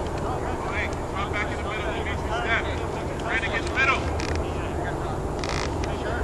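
Scattered voices of players and spectators at a soccer match calling out across the field, short and indistinct, over a steady low rumble.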